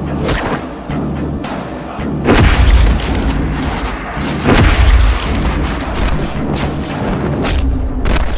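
Dramatic action-film background score with two heavy, deep booming hits about two seconds apart.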